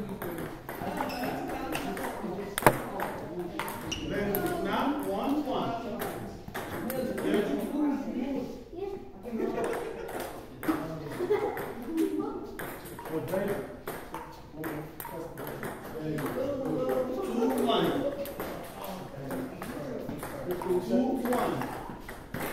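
Table tennis balls clicking off bats and tables in many quick, irregular strikes from several games at once, with one sharper, louder click a few seconds in.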